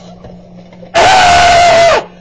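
A person's voice screaming loudly for about a second, starting abruptly about a second in. The scream is held on one steady pitch, so loud that it overloads the recording, and it bends down as it cuts off.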